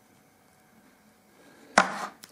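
Faint room tone, then near the end a sudden, brief, loud handling noise from packaging on a table as goods are set down and picked up.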